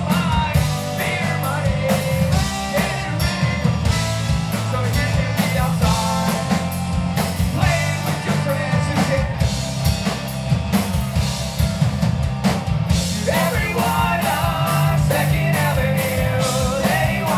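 Live punk rock band playing loud and steady: distorted electric guitars, bass, drum kit and trombone, with sung vocals.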